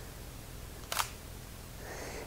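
A single brief, sharp click from a Sony a6000 mirrorless camera about a second in, over a low steady room hum.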